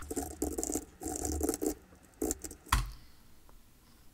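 Typing on a computer keyboard: quick runs of keystrokes for the first second and a half or so, then a few single key presses, the loudest shortly before the end.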